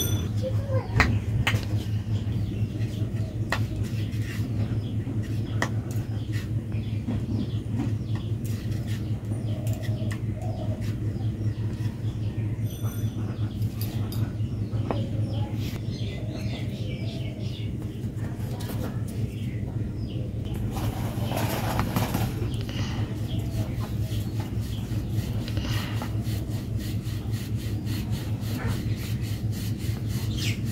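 A steady low hum with a fast flutter, under faint rubbing and scattered light taps of a hand working flour in a plastic bowl.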